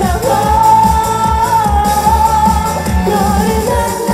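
A woman sings live over an upbeat pop dance backing track with a steady kick-drum beat. She holds one long note for about two seconds, starting just after the beginning, then goes on into shorter phrases.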